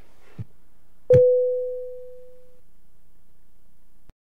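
A single sharp gavel strike on the bench, marking a recess, followed by a clear ringing tone that fades over about a second and a half. A faint knock comes just before it.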